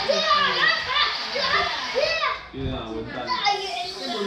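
Young children's voices shouting and squealing in play, with high, swooping cries through the first half, then lower speech in the background for the rest.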